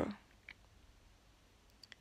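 A few faint clicks in a quiet small room: a single click about half a second in and two or three quick clicks near the end.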